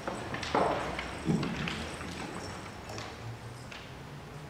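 Hard-soled footsteps and a few knocks on a wooden stage floor, irregular and loudest in the first second and a half, fading to faint taps and shuffling.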